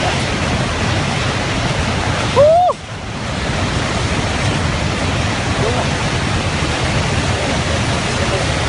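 Steady, loud rush of muddy floodwater released by a dam collapse, a torrent carrying debris across the valley floor. A person gives one short, loud shout about two and a half seconds in, and a fainter call follows near the six-second mark.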